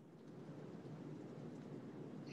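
Faint, steady rustle of yarn being pulled off and wound by hand.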